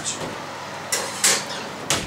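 Oven door opened, a pastry-lined baking dish set inside with a clatter about a second in, and the door knocked shut just before the end.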